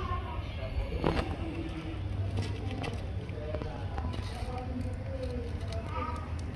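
Faint voices talking in the background over a steady low outdoor rumble, with one brief click about a second in.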